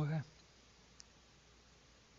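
A man's voice trails off at the start, then near silence with a single faint click about a second in.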